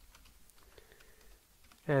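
Faint computer keyboard typing: a handful of light key clicks as a word is typed.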